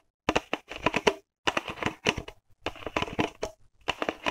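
A crumpled green plastic bottle crackling and crinkling under fingers and nails, in quick runs of sharp clicks broken by short pauses.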